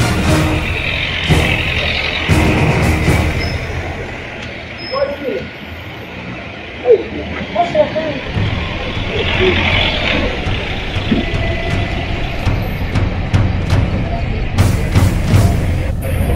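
Background music over street noise: a vehicle engine running with a low rumble, and people's voices calling out, with a sharp thump about seven seconds in.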